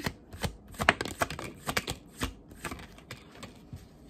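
A tarot deck being shuffled overhand by hand: a quick run of card slaps and flicks, busiest in the first two seconds and thinning out near the end.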